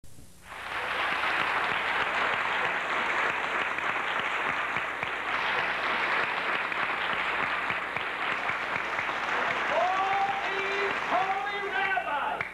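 Audience applauding steadily, with a voice rising over the clapping near the end.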